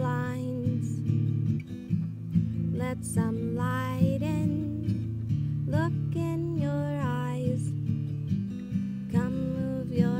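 Acoustic guitar strummed and picked in steady chords, with a woman's voice singing phrases over it at intervals.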